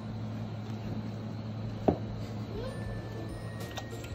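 Steady low hum, with one sharp click about two seconds in.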